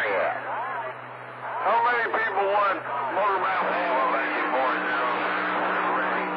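Men's voices coming in on CB channel 28 skip through the radio's speaker. A steady hum runs under the voices and jumps to a higher pair of tones about three and a half seconds in.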